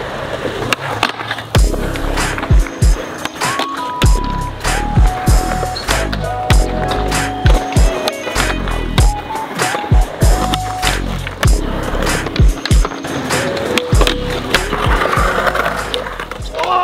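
Background music with a heavy, steady beat, over a skateboard rolling on concrete with the clacks and scrapes of tricks on ledges.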